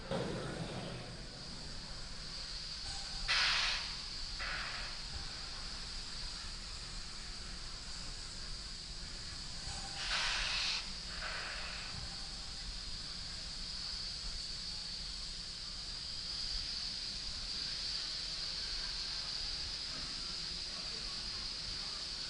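Pad-side audio of a fuelled Falcon 9: short hisses of gas venting off the rocket during propellant loading, the loudest about three seconds in and again about ten seconds in, each followed by a weaker one. A steady high-pitched chirring runs underneath.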